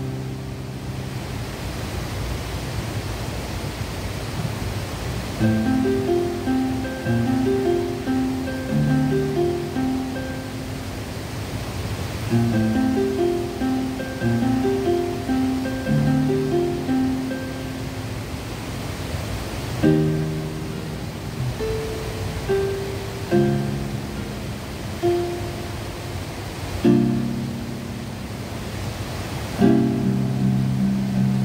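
Electric keyboard playing an instrumental passage of a pop song: softer held chords for the first few seconds, then a melody of short repeated notes over the chords, with brief pauses near the middle and toward the end. A steady rush of water from a weir runs underneath.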